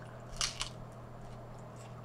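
A bite into a slice of New York-style pizza: two short crunches of the crust about half a second in, then quiet chewing over a low steady hum.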